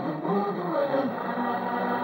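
Music playing from an FM radio tuned to a distant station at 88.9 MHz, heard with its top end cut off.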